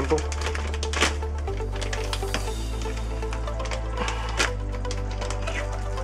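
Background electronic dance music with a steady bass line that steps from note to note. A few sharp clicks of a spoon against a metal pan sound over it, about a second in and again past the middle.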